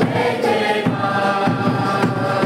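A congregation singing a hymn together, many voices at once, over a steady beat.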